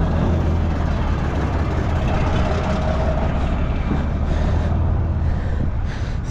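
Manure tank truck's engine running as the truck drives, a steady low drone under a broad rush of road and wind noise.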